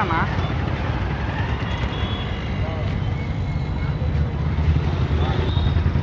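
Motorcycle engines in street traffic, a steady low rumble that gets louder over the last second or two as a bike comes close.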